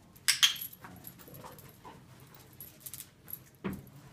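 A police training dog on a lead working a scent target, with a brief sharp jingle of metal collar and lead hardware just after the start. Quieter sounds of the dog moving follow, and a single knock comes near the end.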